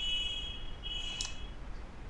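A faint steady hum with a high electronic whine that sounds twice, and a single computer-mouse click about a second in.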